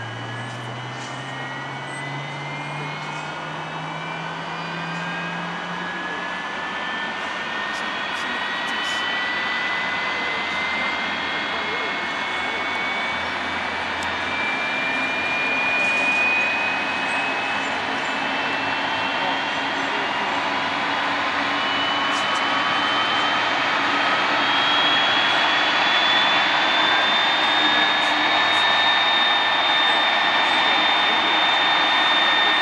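Airbus A330-202 jet engine spooling up at start during pushback: a whine that climbs slowly and steadily in pitch over a roar that grows louder throughout. A lower hum also rises in pitch over the first few seconds.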